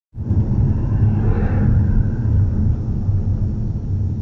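Steady low rumble of a car's road and engine noise heard inside the cabin as the car slows, easing a little toward the end. A faint wavering higher tone rises and falls about a second and a half in.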